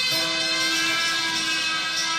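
Electric guitar played through a delay effect: notes struck just at the start ring on as a sustained chord over the fading echo repeats of earlier notes.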